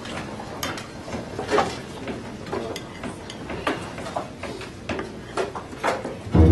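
Scattered, irregular clicks and light clatter, a few each second, over a low murmur of room noise in a small club.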